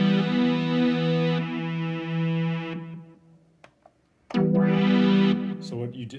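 A Juno synthesizer module sustains an E minor triad played from a MIDI guitar, a steady electronic chord that fades out about three seconds in. After a second of near silence, the same chord sounds again briefly.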